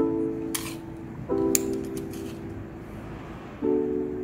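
Soft background music of held keyboard chords, the chord changing about a second in and again near the end. A brief rustle and a sharp click are heard over it.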